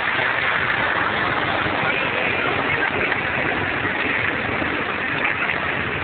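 Steady motorboat engine noise mixed with the wash of water from a passing launch's wake.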